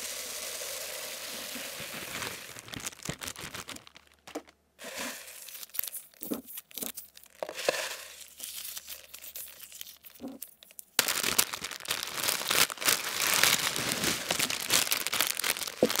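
ASMR handling sounds close to the microphone: small beads poured out of a plastic zip bag in a steady hiss for about four seconds, then scattered taps and clicks. From about two-thirds of the way in, a plastic bag is crinkled, dense and louder.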